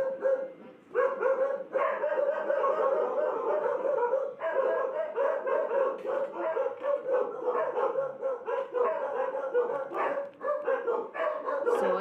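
Several dogs barking nonstop, fast barks one after another with hardly a break.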